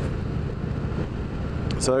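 Indian Thunder Stroke 111 (1,811 cc) V-twin engine running steadily at road speed, a low rumble heard from the rider's seat with road and wind noise over it.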